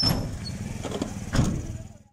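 Street noise with a low, steady vehicle engine rumble and a few brief muffled voices, fading out at the end.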